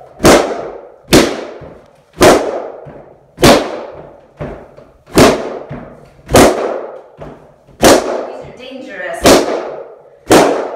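Latex party balloons bursting one after another as they are stomped underfoot: eight sharp bangs, about one to one and a half seconds apart, each trailing off briefly.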